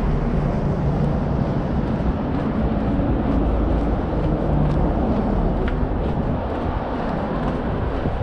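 Steady road traffic noise from the adjacent road, with faint, regular footsteps on the path.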